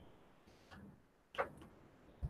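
Faint laptop keyboard keystrokes: a soft tap a little before the middle and a sharper click about one and a half seconds in.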